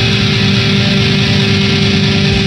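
Shoegaze rock song playing loud and steady: a dense wall of electric guitar with long held notes.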